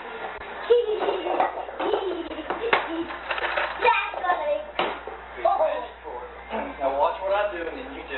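Indistinct talking, with a child's voice among it, and a few sharp knocks.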